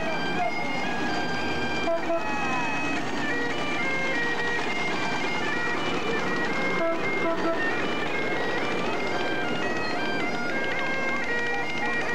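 Bagpipes playing a tune, the melody stepping between held notes over a steady drone, with passing vintage vehicles and crowd chatter underneath.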